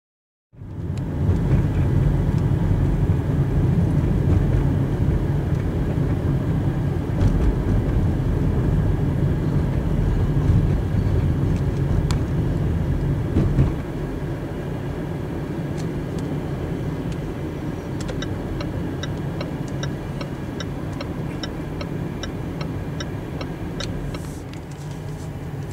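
Road and engine noise inside a moving car's cabin: a steady low rumble that starts about half a second in and eases slightly after about 14 seconds. Over the last six seconds a turn indicator ticks about twice a second.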